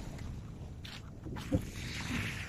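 Low, steady rumble of wind on a phone microphone, with a single short knock about one and a half seconds in as the phone is handled.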